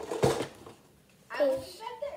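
A short clatter just after the start, then a child's voice calling out briefly about a second and a half in.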